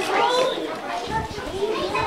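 Many children's voices talking and calling out at once, overlapping in a hall, with a few low bumps about halfway through.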